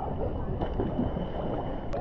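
Lake water sloshing and washing against a waterproof action camera's microphone as a swimmer moves through the water, a muffled, low, steady wash.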